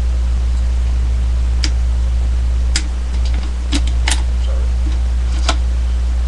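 A steady low electrical hum runs under a handful of sharp, separate clicks, which fit a plastic toy zord being handled and set down. The hum dips briefly in the middle.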